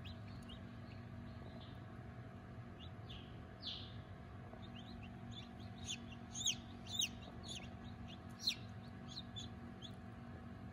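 Newly hatched chicks peeping inside an incubator: scattered high, falling peeps, loudest in a cluster a little past the middle, over the incubator's steady hum.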